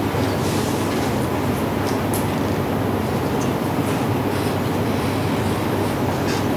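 Steady background room noise with a low rumble and no speech, such as air conditioning or ventilation in a lecture room.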